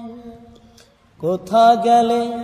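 A solo voice singing a Bangla Islamic song (gojol). A long held note fades away in the first second. After a short pause, a new phrase starts about a second in with an upward glide and settles into another held note.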